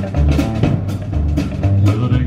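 Live band playing an instrumental passage of a rockabilly-country song: Telecaster-style electric guitar over bass and a drum kit keeping a steady beat.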